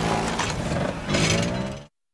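Small car engine running with a low, steady drone as the car drives off, cutting off suddenly near the end.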